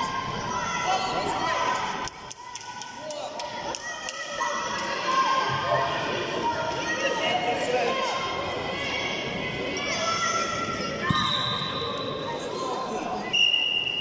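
Greco-Roman wrestling bout in a large sports hall: voices shouting over the mat throughout, with scattered thuds and knocks. Near the end comes a short, high, steady whistle as the referee stops the action.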